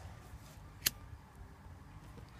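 One sharp click from the spark wheel of a disposable flint lighter being struck, a little under a second in, over faint background.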